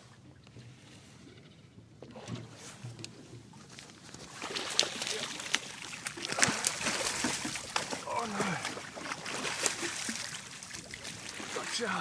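Irregular knocks, clicks and clatter of gear being handled on a small boat, getting much busier about four seconds in, with a brief voiced sound about two-thirds of the way through.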